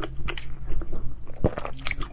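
Close-miked eating sounds: wet chewing and irregular mouth clicks as boiled eggs soaked in chili broth are eaten, with one sharper click about one and a half seconds in.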